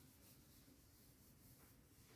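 Near silence, with faint rubbing as a hand wipes marker off a whiteboard.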